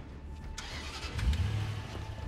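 A car engine starting and running: a low rumble that grows louder about a second in.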